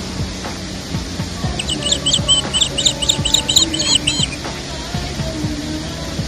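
A songbird sings a quick run of about a dozen short, high chirps lasting roughly three seconds, starting about a second and a half in, over steady background music.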